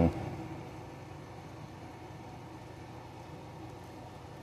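Steady, faint background hum and hiss with no distinct events: ambient noise of the surroundings.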